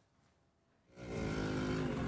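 Near silence, then about a second in, outdoor street noise fades in with a vehicle engine running steadily.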